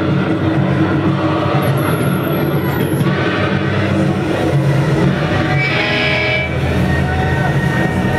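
Amplified electric guitar and bass from a live rock band, loud and steady through the club PA, with voices in the room. A thin high whistle sounds briefly about two seconds in.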